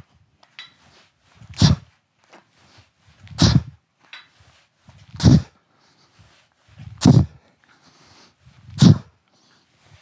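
Sharp, forceful exhalations, one at each swing of a weight belt used like a kettlebell: five short bursts of breath in a steady rhythm, about one every two seconds.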